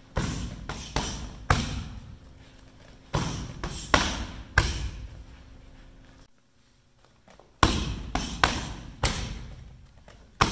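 Kickboxing strikes landing on hand-held striking pads: boxing-gloved punches and bare-shin roundhouse kicks, each a sharp smack with a short echo. They come in three quick runs of about four hits each, the four-count of kick, cross, hook and kick, with a quiet pause about six seconds in.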